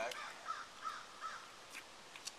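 A bird calling: four short, similar notes in quick succession, about three a second, then a faint click near the end.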